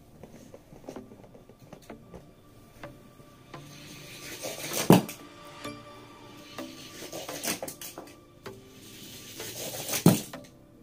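Die-cast toy cars rattling down a plastic track, each run building up and ending in a sharp clack of impact: once about five seconds in and again at the very end, with small ticks and clicks between.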